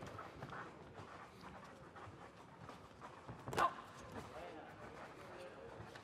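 Quiet ringside ambience of a boxing bout: low, even background noise with faint voices. One short, sharp sound comes about three and a half seconds in, together with a single spoken 'No'.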